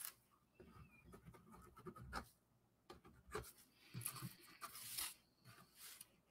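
Faint scratching of a white paint marker's tip stroking across a drawing board, in short strokes with light taps, one longer stroke about four seconds in.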